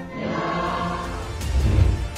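Dramatic soundtrack music with a choir singing sustained chords, ending in a deep, loud low boom in the last half-second.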